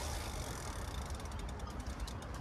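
Rapid, evenly spaced mechanical clicking like a ratchet, starting about a second in, over a low rumble of wind on the microphone.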